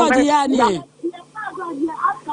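A woman talking into a microphone, breaking off just under a second in; a fainter voice carries on over a low steady hum for the rest.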